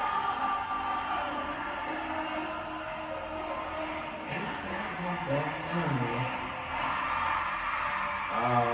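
Stadium concert crowd singing and chanting along with the music. From about four seconds in, a clear sung melody stands out over the crowd noise.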